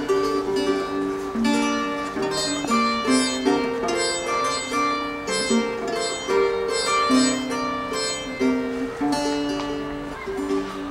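Solo kobza, plucked: an instrumental passage of a Ukrainian folk song, a quick picked melody with lower strings ringing on beneath it.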